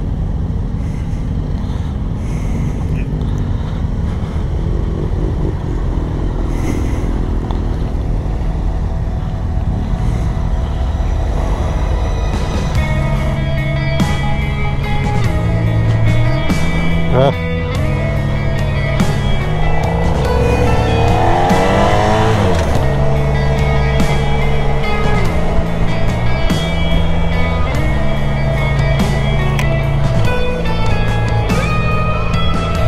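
Motorcycle engine and road noise while riding. About twelve seconds in, background music with a steady beat comes in and carries on over it.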